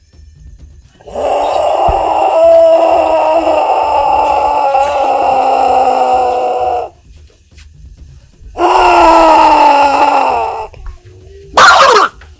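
A person's voice held in a long, loud, drawn-out vocalization lasting about six seconds, then a second, shorter one that slides down in pitch as it dies away.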